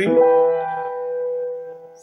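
A piano chord is struck once and held, its notes ringing steadily and slowly fading. It is the E minor chord of bar six, the fourth degree of B minor, with E in the bass, B in the middle voice and G on top.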